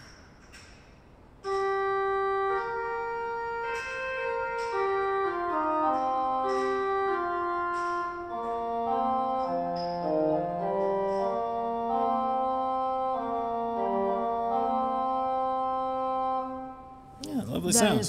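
Full cornet registration on the Great of a 1991 Martin Ott mechanical-action pipe organ (8' and 4' flutes with 2 2/3' quint, 2' flute and 1 3/5' tierce), bright and reedy-edged from the mutations: a short melodic passage begins about a second and a half in and ends just before the close.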